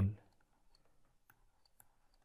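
A few faint, scattered clicks of a stylus tip tapping a pen tablet during handwriting.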